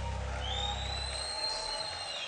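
The band's final chord ringing out and fading away, its low notes dying about a second and a half in. Over it a long, high whistle glides up and then holds.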